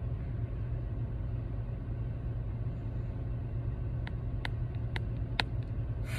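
Steady low rumble of a car engine idling, heard inside the cabin, with a few faint short clicks near the end.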